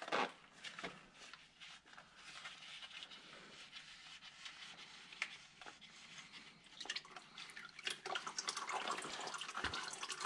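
Engine oil dribbling and dripping from a spin-on oil filter being unscrewed by hand into a drain pan, the drips coming thicker toward the end, with faint handling clicks from gloved hands on the filter. A single knock right at the start.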